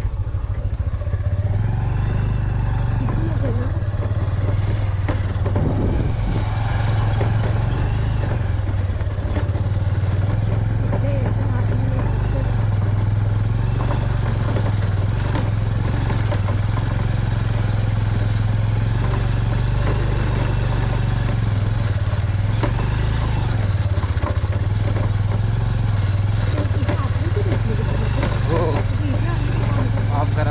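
Motorcycle engine running steadily with a constant low drone while the bike rides over a rough, rocky dirt track.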